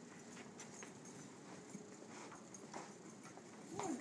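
Faint footsteps and shoe taps on a floor, irregular and scattered, from someone dancing without music.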